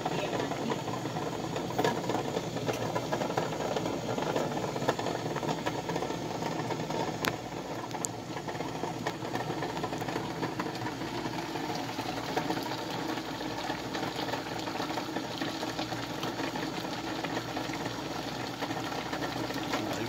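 Water at a rolling boil in a stainless steel pot with unopened cans inside, bubbling steadily, the cans chattering and rattling against the pot. A few faint ticks break through the steady boil.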